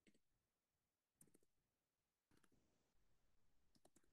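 Near silence with a few faint computer keyboard keystrokes, coming in small clusters about a second apart.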